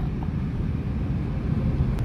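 Steady low rumble of road and engine noise heard inside the cabin of a moving Suzuki car.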